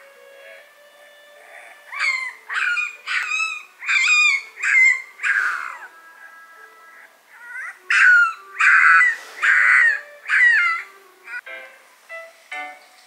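Puppy whimpering and yelping: two runs of short, high-pitched cries, each rising and falling, about two a second, over faint background music.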